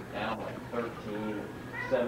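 Indistinct voices of people talking, with two short high-pitched calls or squeals, one just after the start and one near the end.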